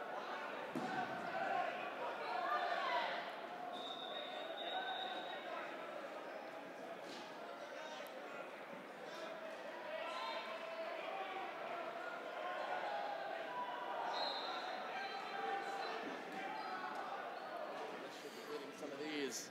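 Dodgeballs bouncing and smacking on a hard gym floor in a few separate strikes, over the distant calls and chatter of players, echoing in a large gym.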